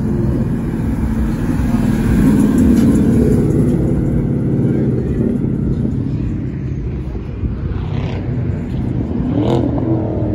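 Car engine running with a deep rumble, swelling about two to three seconds in, and a short rev near the end.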